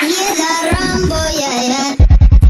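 A break in electronic dance music: a high sung vocal line with shifting pitch over a wash of hiss, without the bass-heavy beat.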